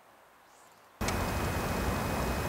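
Faint hiss for about a second, then a sudden jump, at a cut in the footage, to a loud, steady hiss with a low rumble underneath and a thin high tone.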